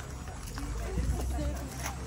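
Indistinct voices of people talking in the background over a steady low rumble.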